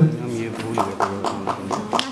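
Hand clapping, quick and even at about five or six claps a second, starting about a second in, over a man's voice.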